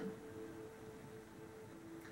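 A quiet pause in a small room: faint room tone, with two faint steady held tones underneath.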